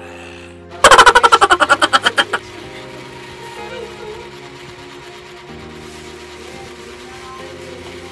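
Background music with a loud, rapid rattling sound effect about a second in: roughly fifteen sharp pulses in a second and a half, falling in pitch. After it the music carries on steadily.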